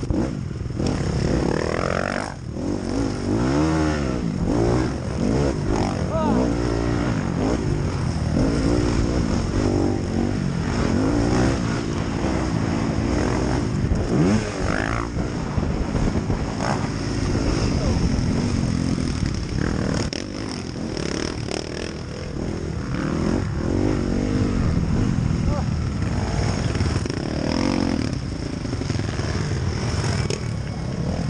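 Motocross bike engine racing on a dirt track, revving hard and dropping back over and over as it accelerates and shifts, its pitch sweeping up and down every second or two.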